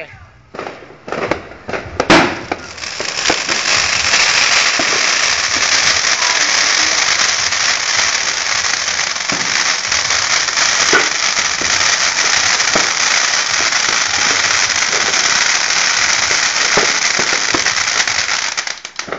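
Ground fountain firework spraying sparks with a steady, loud hiss and crackle, with occasional pops in it. It sets in about three seconds in, after a few sharp cracks and one loud bang about two seconds in.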